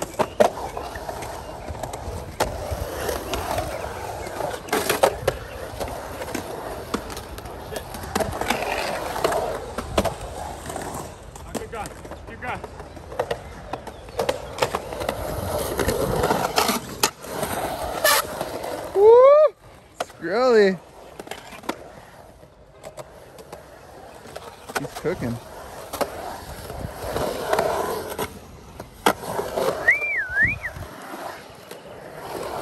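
Skateboard wheels rolling on a concrete bowl and flat concrete, with scattered sharp clacks of the board. Two loud shouts that swoop up and down in pitch come about two-thirds of the way through.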